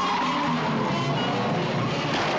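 Car-chase scene from a film soundtrack: saloon cars driving hard with tyres squealing, mixed with film score music.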